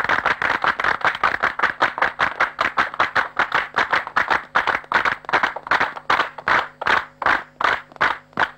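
A crowd clapping in unison: dense applause at first that settles into steady rhythmic claps, about three a second, growing sparser near the end.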